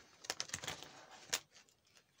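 A plastic card-sleeve page in a ring binder being turned: a crinkly plastic rustle with several small clicks, ending in one sharper click about a second and a half in.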